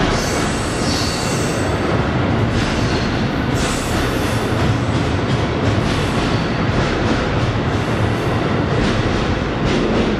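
Amtrak passenger train moving past on the adjacent track at a station platform. A steady loud rush of wheels on rails with repeated clacks runs through it.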